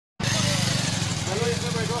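Motorcycle engine running steadily at idle close by, starting a moment in, with voices over it.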